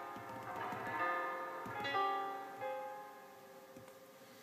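GarageBand for iPad's Grand Piano instrument played on the touchscreen keyboard, with sustain on: a few notes struck about half a second in, at two seconds and just after, each ringing on and fading away.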